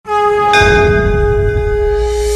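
Cinematic logo sound effect: a loud ringing, bell-like tone that starts suddenly and holds steady, with a deep low rumble swelling underneath and a brighter hit about half a second in.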